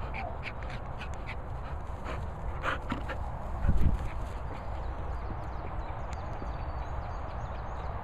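A cocker spaniel gives a short falling whine right at the start, with low wind rumble on the microphone throughout and a loud thump just before four seconds in.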